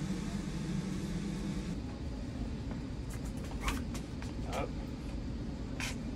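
Indoor store room tone: a steady low hum of the building's air handling. A lower hum stops about two seconds in, a few brief faint sounds follow, and a man says a short "oh" near the end.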